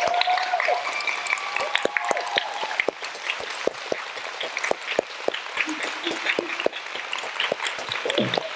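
A small congregation applauding: individual hand claps stand out rather than a dense roar, with a few cheering voices in the first two seconds or so, and the clapping thins a little after about three seconds.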